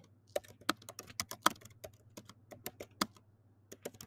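Computer keyboard typing: a quick, irregular run of key clicks, with a short pause near the end.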